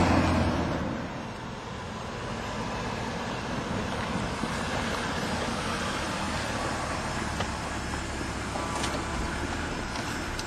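A car's engine running with a steady rushing noise; its deeper rumble drops away about a second in.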